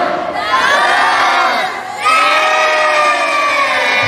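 Crowd shouting and cheering together on cue, the group shout on the count of three, in two long swells of many voices, the second starting about halfway through.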